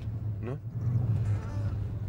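Steady low drone of a car driving, heard from inside the cabin.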